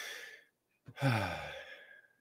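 A man breathes in, then lets out an audible voiced sigh about a second in, falling in pitch as it trails off.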